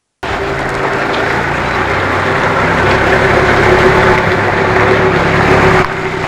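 A motor vehicle engine running steadily with a low hum under dense outdoor street noise. It starts abruptly just after the beginning.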